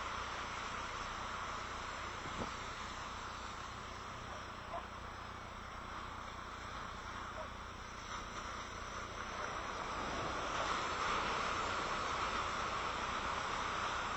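Steady hiss of surf washing on a beach, growing slightly louder near the end.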